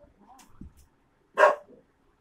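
A small dog giving a single short, loud bark about one and a half seconds in, with a few faint small sounds before it.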